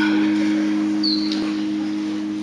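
Sustained keyboard chord: two low notes held steady without fading, opening the song, with a brief high chirp about a second in.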